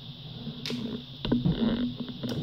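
Handling noise as the camera is picked up and moved: a light click about two-thirds of a second in, another a little past a second, then a short low rumble.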